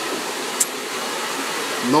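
Steady rushing noise of blowing air, even and unbroken.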